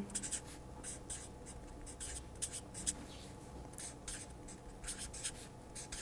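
Marker pen writing on paper: a quick, irregular run of short, faint, scratchy strokes as words are written out by hand.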